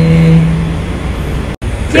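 A woman's drawn-out cheer of "yeah", held on one steady pitch for about the first second, over a steady low hum. The sound drops out for an instant near the end, then cheering voices start again.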